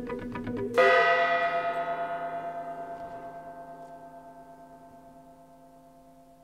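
Quick, evenly repeated plucked notes stop as a single bell-like tone is struck a little under a second in. It rings with many overtones and fades slowly away.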